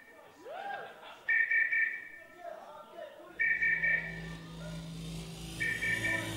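Live synthesizer intro in a hall: a short, high, pulsing two-tone figure repeats about every two seconds. A sustained low note comes in about three seconds in, with audience voices in between.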